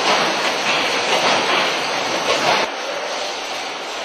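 Fast-Baler 500 baling machine and packaging line running: a loud, steady mechanical noise with a hiss that swells now and then. About two-thirds of the way in it drops abruptly to a quieter, steadier noise.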